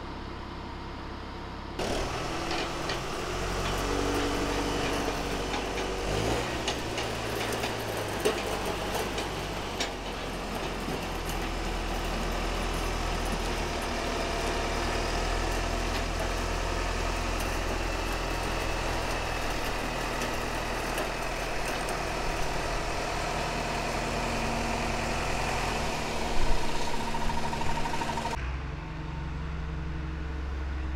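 A vehicle engine running steadily, with a few knocks in the first part; the sound begins abruptly about two seconds in and stops abruptly near the end.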